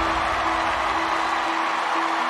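A studio audience applauding and cheering in a dense, steady wash, with background music holding a steady note that pulses about twice a second.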